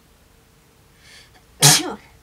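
A woman sneezes once, a short loud sneeze near the end after a faint indrawn breath; she has a head cold with an itchy, stuffy and runny nose.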